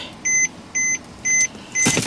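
A car's electronic warning chime beeping steadily, four short beeps at about two a second, with a sharp knock just before the end.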